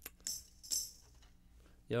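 A few brief, quiet jingling shakes of hand percussion in the first second, with low room noise between them. A man's voice begins right at the end.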